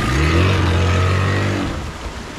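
Yamaha outboard motor on a small speedboat running under throttle as the boat pulls away, a steady engine drone that fades out near the end.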